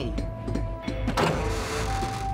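A whirring electronic sound effect of a robot being switched on, starting about a second in over soundtrack music with sustained tones.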